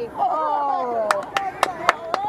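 A drawn-out shout that falls in pitch, then a run of sharp clicks, about four a second, under further shouting.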